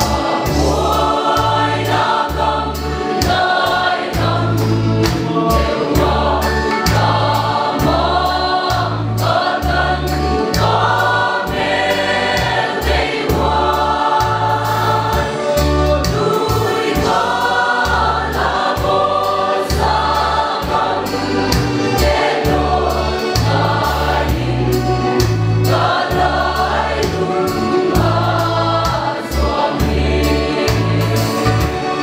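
Mixed choir of men and women singing a gospel hymn in harmony.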